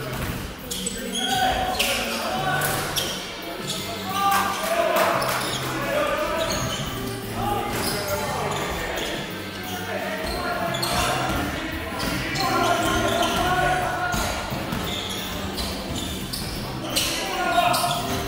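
A basketball bouncing on a wooden gym floor during play: irregular sharp knocks echoing in a large hall, with players' voices among them.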